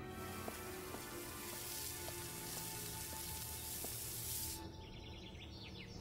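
Faint background music under a steady hiss of outdoor noise, with a few small clicks. About four and a half seconds in, the hiss stops and birds chirp briefly.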